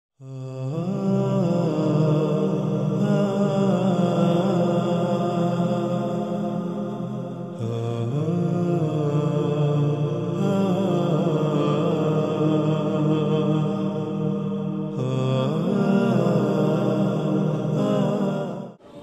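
Intro music of wordless chant-like singing: a voice slides and wavers between notes over a sustained low drone. The phrase changes a few times along the way.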